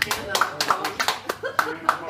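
A small audience applauding, with separate claps heard one by one, and people's voices talking over the clapping.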